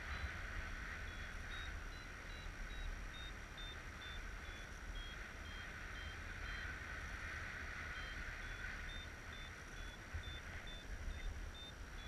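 A paragliding variometer beeping in short quick tones, about three a second, with a pitch that wavers up and down and a short break just after the middle; the beeping signals the glider climbing in lift. Wind rushes and buffets over the camera microphone underneath it.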